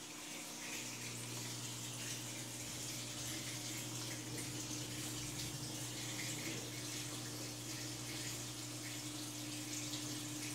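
Water running steadily into an aquaponics swirl filter bucket as the pump circulates it from the fish tank, with a steady low hum underneath that starts about a second in.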